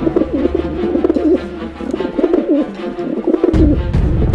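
Homing pigeons cooing, with several overlapping warbling coos over a low musical drone that cuts off near the end.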